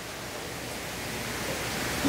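Steady hiss of room tone and microphone noise with a faint low hum, slowly getting louder.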